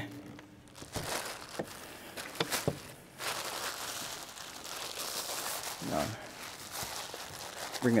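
Sheets of paper rustling and crinkling as they are lifted and handled, after a few light knocks in the first three seconds.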